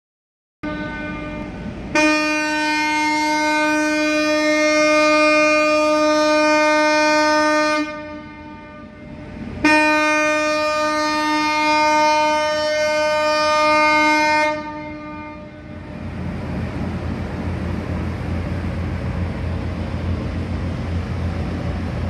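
Ship's horn sounding two long blasts of about six and five seconds, a steady reedy tone with a pause between. A low rumble with hiss follows.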